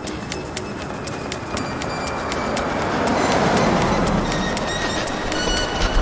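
Ambient electronic music: a wash of noise swells to a peak midway and eases off again, over a steady run of rapid clicks. Faint high tones enter in the second half.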